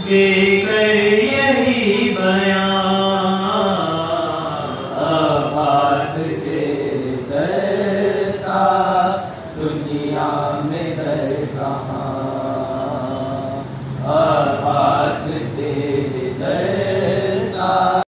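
A young man's voice singing an Urdu devotional poem in praise of Abbas, unaccompanied, in long melodic phrases with held notes and short breaks between lines.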